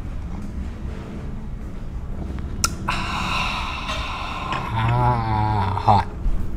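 A man breathing out hard through an open mouth, then a drawn-out, wavering voiced 'ahh' near the end: a reaction to burning his mouth. A sharp click comes just before it.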